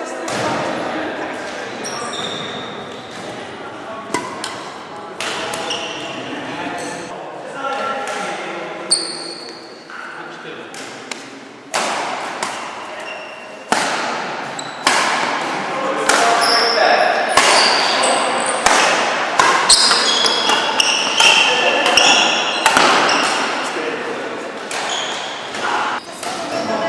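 Badminton play in a large, echoing sports hall: irregular sharp hits of rackets on shuttlecocks and short high squeaks of court shoes on the wooden floor, over background chatter of voices. The hits come more thickly in the second half.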